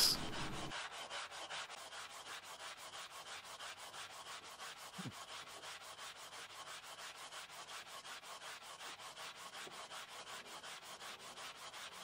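Sandpaper on a wooden radius block being rubbed rapidly back and forth along a Kingwood fretboard, sanding a 12-inch radius into it. The strokes are faint and come in a quick, even rhythm.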